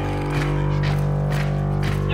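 Background music: a sustained low drone held steady, with a few faint percussive hits over it.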